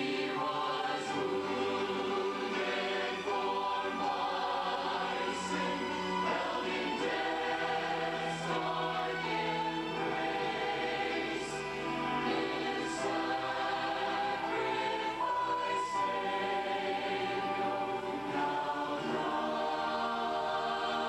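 A church choir singing a slow piece in sustained chords, with the hiss of sung 's' sounds now and then.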